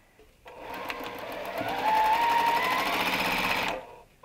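Juki sewing machine stitching a seam through pieced fabric. Its motor whine rises as it speeds up, then runs steadily with rapid needle strokes, and stops shortly before the end.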